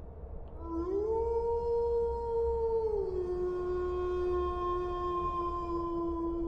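A single long howl, like a canine's. It rises about half a second in, holds one note, drops to a lower held note about three seconds in, and carries on to the end.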